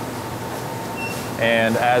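Vitronics Soltec reflow soldering oven running, its convection fans and exhaust giving a steady rush of air with a low hum and a faint steady whine.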